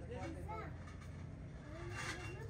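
Faint voices talking in the background over a steady low rumble.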